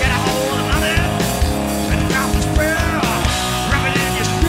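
A rock trio playing live: electric guitar, bass guitar and drums with a steady beat, and the guitarist singing over them.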